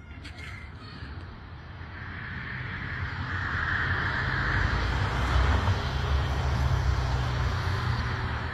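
A car approaching along the street, its tyre and engine noise building over a few seconds and staying loud near the end.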